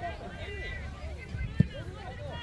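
Distant voices of players and spectators calling across an open field, with a steady low wind rumble on the microphone and a single short thump about one and a half seconds in.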